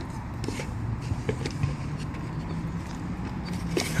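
Light taps and scrapes of a hand handling a cardboard box and its inner tray, over a steady low hum.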